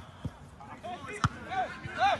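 Soccer ball being kicked: two sharp thuds about a second apart, the second much louder, amid players' shouted calls.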